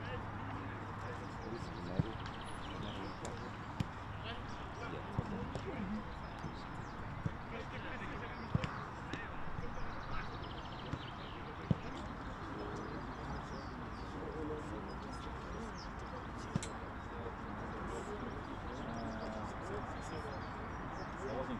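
Outdoor football training-ground ambience: indistinct distant voices over a steady background hum, with a sharp thud of a football being struck every few seconds.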